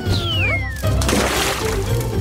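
A cartoon kitten's meow, falling in pitch, over background music with a steady bass line, followed by about a second of hissing noise.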